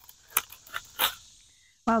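Dry twigs of an old wren nest crackling as they are pulled by a gloved hand out of a wooden birdhouse: four short crackles in the first second or so.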